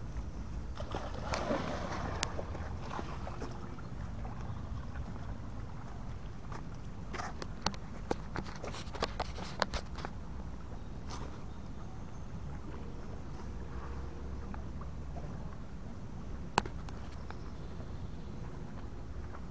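A dog entering a creek with a splash about a second in. After it come faint outdoor ambience, a low steady rumble, and a few sharp clicks in the middle and near the end.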